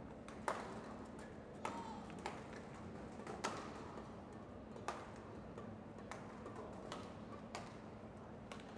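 Badminton rackets striking a shuttlecock during a doubles rally: a string of sharp hits at irregular gaps of roughly a second.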